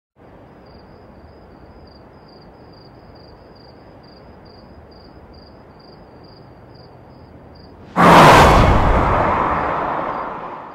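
Faint outdoor ambience with an insect chirping steadily, about two or three chirps a second. About eight seconds in, a sudden loud cinematic impact boom hits and fades away over the next few seconds.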